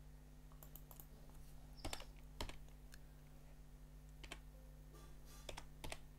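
Faint computer keyboard keystrokes as a short word is typed: a handful of separate sharp clicks, the loudest about two seconds in and another pair near the end, over a steady low hum.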